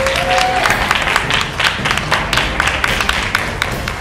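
A small audience applauding, dense uneven clapping throughout, with a short rising voice call right at the start.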